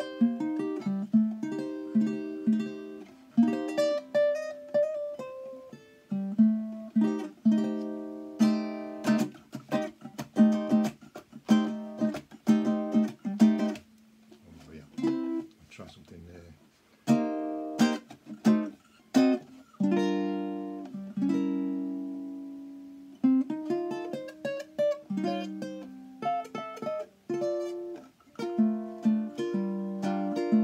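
Tenor ukulele with a baritone body, ancient bog oak back and sides and a European spruce top, strummed in a rhythmic chord pattern. About two-thirds of the way through, a few chords are left to ring out before the strumming picks up again.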